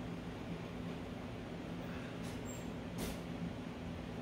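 Steady low hum, with a sharp click about three seconds in and a fainter one just before it, as a plastic omelet maker is handled in the open microwave.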